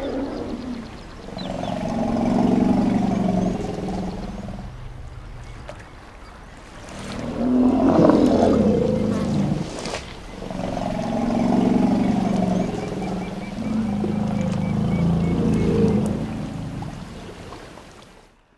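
African elephants calling: three long, low, rumbling calls of several seconds each, the middle one louder and rougher. The sound fades out near the end.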